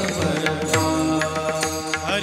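Kirtan accompaniment: a pakhawaj drum played by hand in quick, uneven strokes, with small hand cymbals, over steady held tones.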